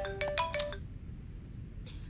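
Smartphone ringtone for an incoming call: a quick run of short, chiming notes that stops under a second in.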